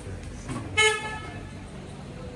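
A vehicle horn gives one short, steady-pitched beep about three-quarters of a second in, over low street background noise.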